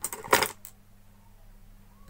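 A brief clatter of metal-on-metal clinks from a steel screwdriver knocking against other hand tools and the iron's metal soleplate, loudest about a third of a second in.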